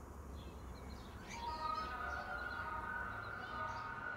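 Soft background music fading in: a chord of steady held notes that swells about a second and a half in. Faint bird chirps sound over it.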